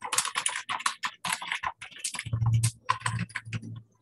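Typing on a computer keyboard: a quick, irregular run of keystrokes, with a low hum under the second half.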